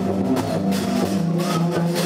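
Live jazz band playing: held notes over keyboard and double bass, with drum and cymbal hits.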